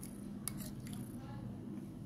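A metal spoon scraping and clicking against a glass bowl as thick paste is scooped out, with one sharp click about half a second in and lighter scrapes after it.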